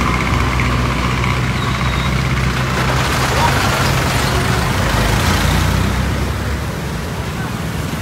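A bus engine running low and steady as the bus creeps slowly past close by in heavy road traffic, with road noise swelling in the middle; the engine hum fades near the end.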